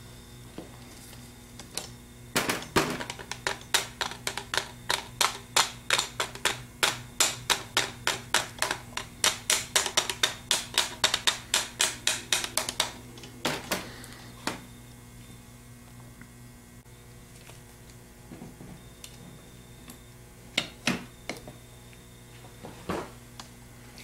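Light metal-on-metal taps of a ball-peen hammer's ball end on a Ford 3G alternator's stator laminations, pushing protruding lamination edges back so they won't rub the spinning rotor. The taps come quickly, about four a second, for around ten seconds, then a few single taps follow near the end.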